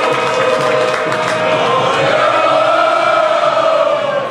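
Many voices singing together in long held notes that rise and fall slowly, like a choir or a crowd chanting in unison.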